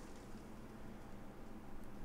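Faint low hum of the Enermax NeoChanger pump-reservoir combo's pump running while its speed is being stepped down from about 3,600 RPM toward 1,500 RPM.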